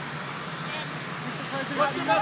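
A steady engine drone, like aircraft engines, runs under faint voices, with a voice starting up near the end.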